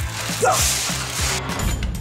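A rush of breath and rustling of thin plastic windbags as children blow hard into them for about a second, cutting off abruptly as music with a steady beat starts.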